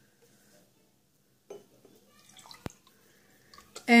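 Faint dripping and splashing of water being poured from a plastic bottle, with one sharp click a little past halfway.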